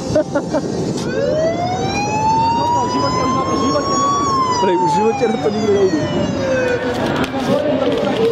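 A siren wailing once, a single slow cycle: it rises in pitch for about three seconds, then falls for about two and a half. Voices talk underneath it.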